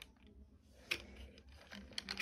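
Mostly quiet, with one light click about a second in and a few fainter ticks after, from the plastic parts of a Hot Wheels Spider Strike toy track and its spider figure being handled.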